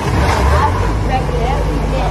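Excited voices and short exclamations over a loud, steady low rumble.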